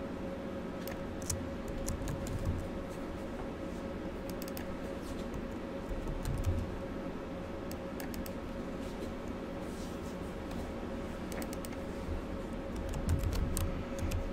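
Typing on a computer keyboard: scattered key clicks in short runs with pauses between, over a faint steady hum.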